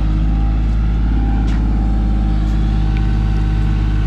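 A motor vehicle's engine running steadily at idle, a constant low hum.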